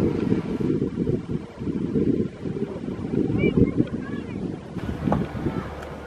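Wind buffeting the camera microphone, a gusting rumble that rises and falls.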